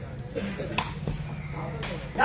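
Two sharp strikes about a second apart of a sepak takraw ball being kicked as play starts, over low background noise.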